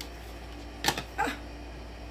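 Steady low hum of a small room, broken about a second in by one sharp click and then a short 'ah'.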